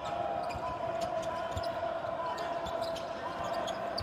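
Basketball being dribbled on a hardwood court, heard as scattered thuds over arena crowd noise with a steady tone running underneath.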